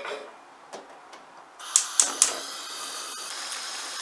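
Gas stove burner being lit: about halfway through a hiss of gas starts, with three quick clicks of the igniter, and the steady hiss carries on. Near the end the pot of water is at a rolling boil.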